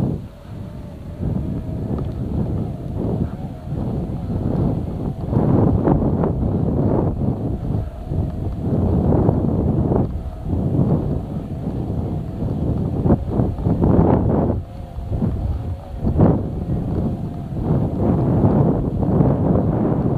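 Wind noise buffeting an action camera's microphone as it moves slowly over a snow-covered road, a low, uneven rumble that swells and drops every second or so.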